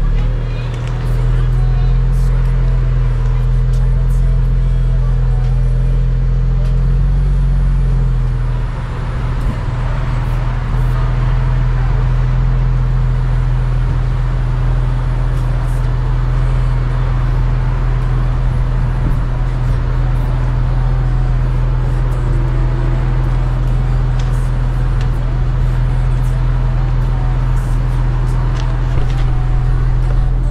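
Audi S5's turbocharged V6 engine idling steadily, a low, even hum; the owner says the engine runs a little rough.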